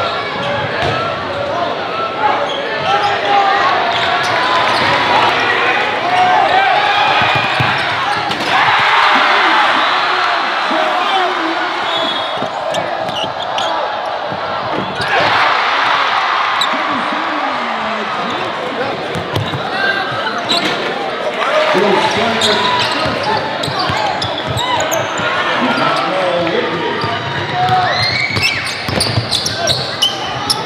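Live basketball game sound in a gym: a ball bouncing on the hardwood court and a crowd talking and shouting, with the crowd noise swelling twice, about eight seconds in and again about fifteen seconds in.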